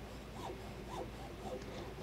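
Jeweller's piercing saw cutting through a metal ring shank in faint, even strokes, about two a second.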